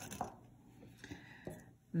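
A quiet pause with two faint, short clicks of metal costume-jewelry brooches being handled on a table.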